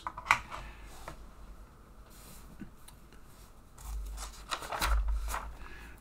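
Faint handling noise of small plastic switches and wires being let go and moved: a few light clicks and rubbing, with a low rumble about four to five seconds in. The motor is not running.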